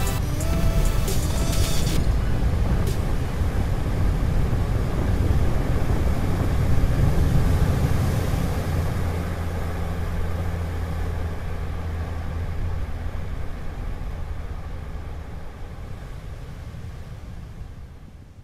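Background music for the first two seconds or so, then a steady low rumble of wind on the microphone over ocean surf, fading gradually toward the end.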